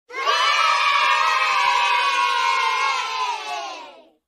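A group of children cheering together in one long, sustained shout of many voices, cut in abruptly and fading out near the end.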